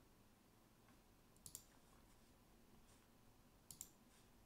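Near silence broken by faint computer mouse clicks: a quick pair about one and a half seconds in, and another pair near the end.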